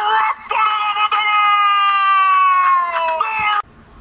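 A person's voice holding one long high yell for about three seconds, its pitch slowly falling, after a few short shouted syllables.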